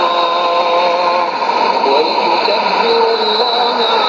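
Shortwave AM broadcast on 17870 kHz heard through a Sony ICF-2001D receiver's speaker: a voice reciting Arabic Quran verses in long held, gliding notes, the clearest in the first second, over steady static hiss.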